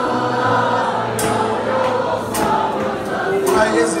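Live band music with many voices singing along together in the chorus, over regular drum hits.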